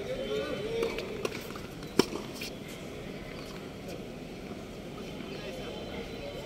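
A single sharp smack of a tennis ball against a racket or the court about two seconds in, with a couple of fainter ball knocks around it. Brief voices at the start, over steady outdoor background hiss.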